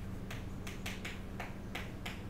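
Chalk writing on a chalkboard: a quick series of short taps and scratches, several a second, as numbers are written. A low steady hum runs underneath.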